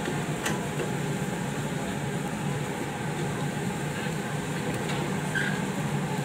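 A steady low machine hum over the general noise of an outdoor food stall, with a few faint light clicks at the grill.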